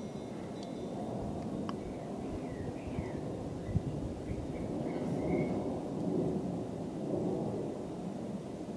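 Distant, steady low rumble of a B-1B Lancer's four turbofan engines as the bomber passes overhead, swelling slightly around the middle.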